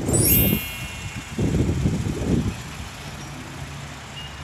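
Outdoor traffic ambience: wind rumbling on the microphone in two gusts, the first at the start and the second about one and a half seconds in, over a steady low vehicle hum.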